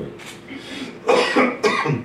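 A person coughing: a faint short cough near the start, then two loud coughs in quick succession about a second in.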